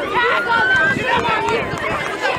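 Several people shouting and talking over one another at once, no words clear.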